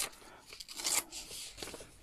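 Old printed paper being torn by hand, a short rip that is loudest about a second in, followed by soft rustling as the torn strip is handled.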